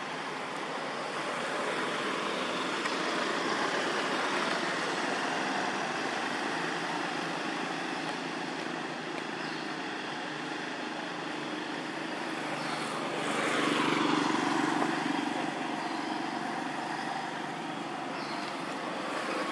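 Steady road traffic noise, with one vehicle passing close about three-quarters of the way through, growing louder and then dropping in pitch as it goes by.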